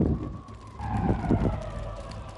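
Dramatic promo sound effects: a sudden loud low boom, then a siren-like tone that slides down and holds over a low rumble.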